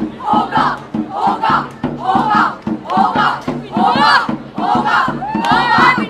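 A group of performers chanting in unison in short rhythmic shouts, a little under one a second, over hand-drum beats.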